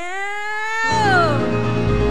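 A woman's voice holds one long note that slides down in pitch after about a second, as the live band comes in underneath with a steady low chord.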